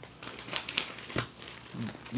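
Soft crinkling and rustling handling noise as a handheld phone is moved about, with one sharp click about a second in.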